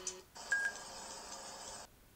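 The intro music's last note, then a steady hiss for about a second and a half with a short beep about half a second in. The hiss cuts off suddenly, leaving faint room tone.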